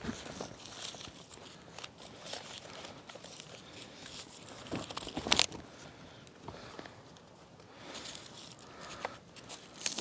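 Plastic bags rustling and crinkling as camping gear is rummaged through, with scattered light clicks and knocks and one louder sharp noise about five seconds in.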